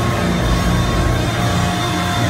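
Live funk band playing loudly, with drum kit and electric bass guitar.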